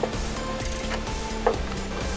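A hand wrench or ratchet slowly working the front bolt of a BMW X3 E83's engine mount, giving a few scattered metallic clicks.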